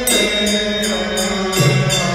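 A monk chants a Vietnamese Buddhist liturgical hymn, holding long, drawn-out notes. The pitch steps down near the end. Steady percussion beats along at about three strikes a second.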